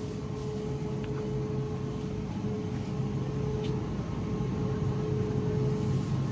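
Steady background hum inside a grocery store: a constant mid-pitched tone over a low rumble.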